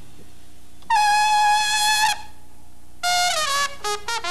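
Trumpet played alone in a slow jazz phrase: a long held note with a light vibrato starting about a second in, a pause, then a short phrase stepping downward near the end.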